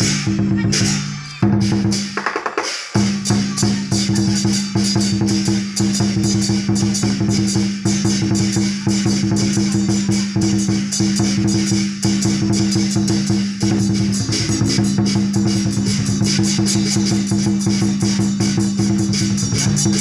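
Percussion music for a Chinese dragon dance: drums and cymbals beating a fast, steady rhythm, with a short break about two to three seconds in before it picks up again.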